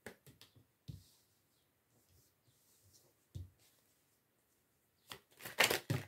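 Oracle cards being handled and sorted on a table: a few soft taps and slides, then a louder flurry of card rustling near the end.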